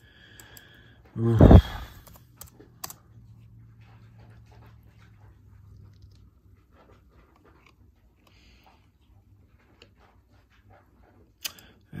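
A short exclaimed "oof", then a few sharp computer mouse clicks and faint clicking over a low steady hum in a quiet room.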